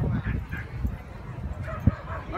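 A dog giving a few short yips and barks, with a sharp thump near the end.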